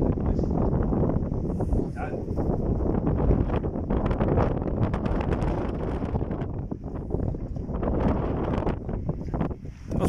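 Wind buffeting the phone's microphone: a steady, loud low rumble that flutters unevenly.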